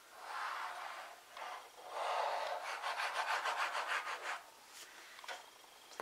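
Hands rubbing and sliding card stock on a paper-crafting board: a soft rub, then about two seconds of quick back-and-forth rubbing strokes that stop well before the end.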